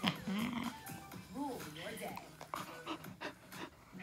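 A five-month-old black golden retriever mix puppy panting and giving a few short rising-and-falling whines during rough play.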